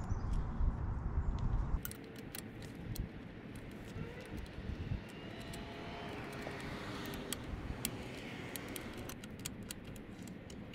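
Light metallic clicks and rattles from the swamp cooler motor's mounting clamps and hardware being handled and fitted. Behind them runs a low rumble that drops away about two seconds in, leaving a faint steady hum of distant traffic.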